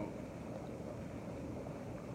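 Hot tub jets running: a steady low rush of churning water.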